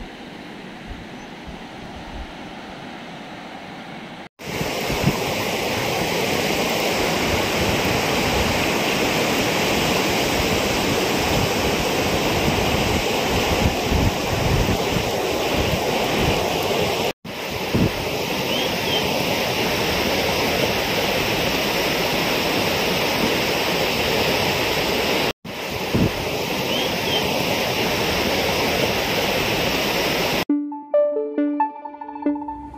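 Fast-flowing floodwater rushing in a steady, loud wash, with wind gusting on the microphone. It is quieter for the first four seconds, then louder after a sudden break, and there are two more brief drop-outs later.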